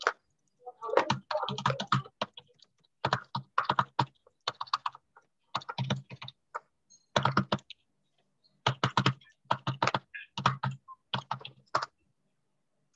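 Typing on a computer keyboard: bursts of quick keystrokes with short pauses between them, typing out a chat message.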